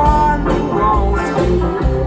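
Live band playing a twang-funk song on electric guitars, bass and drums. A held high note stops about half a second in, and the band plays on.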